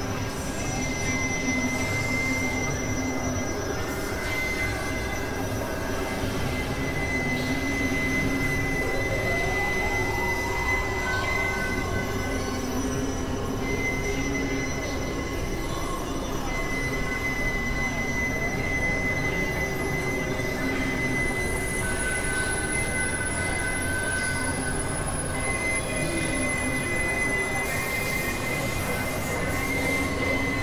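Dense layered experimental noise music: a thin, high steady whine that drops out and comes back, over a thick low rumble, with a tone gliding upward about nine seconds in.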